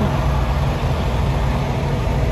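Diesel engine of a semi-truck tractor driving slowly past close by, a steady low engine sound.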